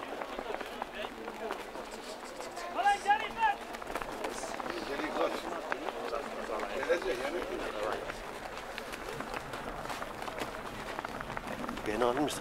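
Spectators' voices talking and calling out across an open field, with one loud high-pitched wavering call about three seconds in.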